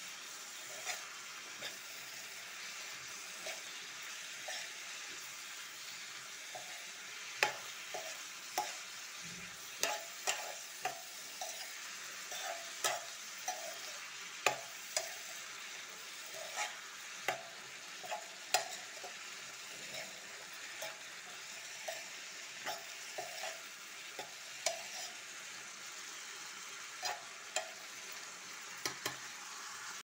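Chopped radish and radish greens frying in oil in a pan with a steady sizzle, while a spatula stirs and scrapes them around, making irregular clinks and scrapes that come more often from about seven seconds in.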